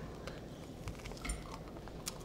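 Faint, sparse crunching from bites into a Takis-crusted cheese corn dog, a few soft crackles.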